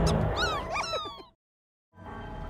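Several short, squeaky cartoon slug-creature chirps that slide up and then down in pitch, over the fading end of the theme music, then an abrupt cut to dead silence for about half a second.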